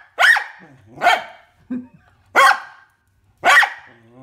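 A puppy barking four times, short sharp barks spaced about a second apart. They are nervous barks at a stuffed toy trapped in a large tin tub, which he is too scared to take out.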